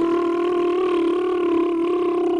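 A cartoon character's voice holding one long, steady-pitched taunting cry.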